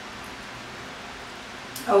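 Chicken curry simmering in an uncovered pan, a steady soft hiss. A woman says a short 'oh' right at the end.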